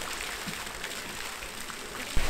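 Pond fountain jets splashing steadily into the water: an even hiss of falling water.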